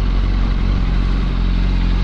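Yamaha R1 sport bike's inline-four engine running steadily at low revs as the bike rolls slowly up to a fuel pump.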